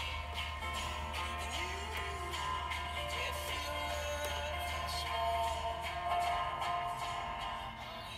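Music from the car radio playing through the dash speakers, powered by a Precision Power Art Series A600 amplifier; the speakers are ones the owner says are blown.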